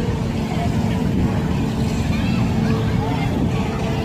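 Amusement park ambience: distant chatter of people over a steady low rumble and a faint steady hum.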